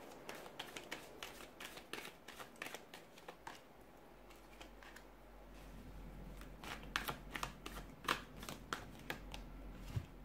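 A deck of paper tarot cards being shuffled and dealt onto a table: quick crisp flicks and snaps of the cards, in a busy run at the start and another from about two-thirds of the way in.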